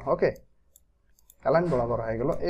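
A man speaking in Bengali, breaking off for about a second in the middle, with a few faint clicks.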